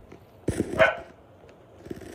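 A dog barks once, loudly, about half a second in, with a fainter short sound near the end.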